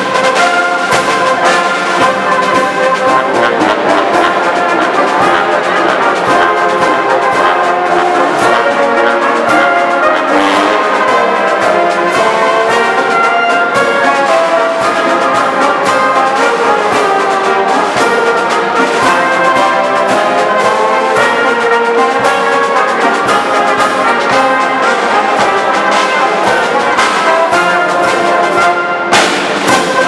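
Military brass band playing a march: trumpets and trombones over a bass drum. The band comes in suddenly at full volume and breaks off briefly just before the end.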